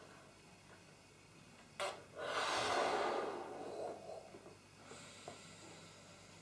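A person blowing up a rubber balloon: a brief sharp puff about two seconds in, then a long breathy blow of air into the balloon that fades away over about two seconds.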